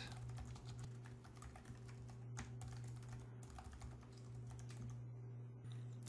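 Faint typing on a computer keyboard: a quick run of light key clicks that thins out about five seconds in, over a steady low hum.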